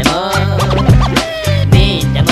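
Hip hop beat with DJ turntable scratching: quick back-and-forth scratches over a bass line and steady drum hits.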